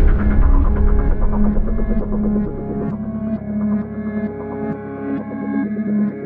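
Background music: an electronic score of held synth notes over a deep throbbing bass that fades out about halfway through.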